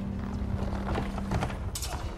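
Irregular footfalls and knocks of performers moving on a wooden theatre stage, under a low held note that fades out partway through. There are a couple of sharper, brighter clatters near the end.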